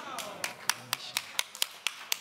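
Rhythmic hand clapping, even sharp claps at about four a second starting about half a second in, in a church hall.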